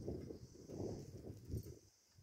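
Wind buffeting the microphone on an open hilltop: an uneven low rumble that swells and fades, dropping away near the end, over a faint steady high insect drone.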